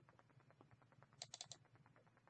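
Computer mouse button clicking: a quick cluster of about four clicks a little over a second in, a double-click opening a folder. Otherwise near silence.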